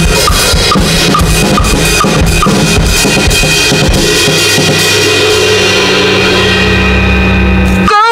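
Drum kit played along to a loud backing track: dense kick, snare and cymbal hits in the first half, then a held low note with the cymbals ringing out and fading over the last few seconds.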